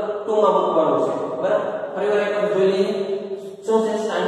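A man's voice lecturing in long, drawn-out syllables with held and gliding pitch.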